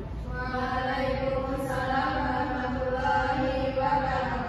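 Several voices reciting together in a slow, drawn-out chant, with each note held for a second or more.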